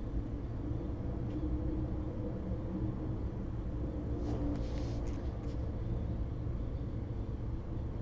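Steady low background hum, with a faint brief rustle about halfway through.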